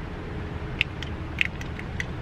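Two short clicks about half a second apart, with a few fainter ticks, as a handheld Bluetooth camera clicker is pressed to fire a phone's camera shutter. A steady low rumble runs underneath.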